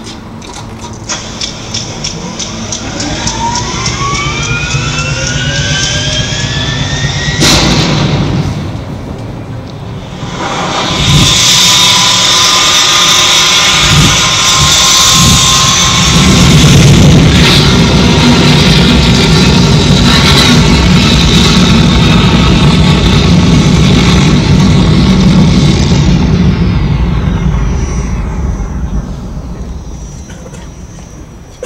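Show soundtrack over loudspeakers: rising whistling sweeps build for several seconds to a sharp hit. After a brief dip comes a loud, sustained roar like a rocket launch, which fades out near the end as its high end sweeps down.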